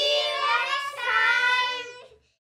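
A high, child-like voice singing two drawn-out, gliding notes without accompaniment, fading out near the end.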